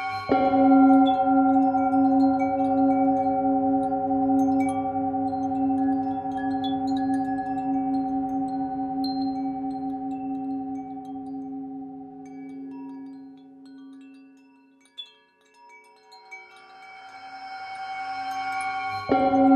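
A Tibetan singing bowl is struck just after the start and rings with several steady pitches, the lowest one wavering. It fades away over about fourteen seconds while wind chimes tinkle sparsely above it. Near the end another bowl tone swells up.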